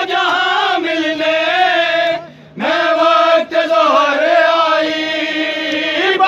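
Group of men chanting a noha, a Muharram mourning lament, in unison with long drawn-out notes. The chant breaks off briefly about two seconds in, then resumes.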